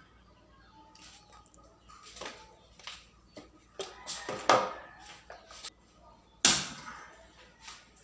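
Power cord and plastic adapter being handled, with small rustles and clicks, then a sharp clack about six and a half seconds in as the two-prong plug is pushed into the wall socket.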